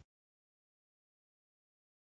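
Silence: the sound track drops to complete digital silence, with no room tone.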